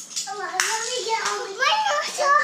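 High-pitched children's voices talking and exclaiming, with one sharp click about a quarter of a second in.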